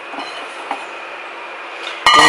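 Steady background hum and hiss with a couple of faint, soft knocks.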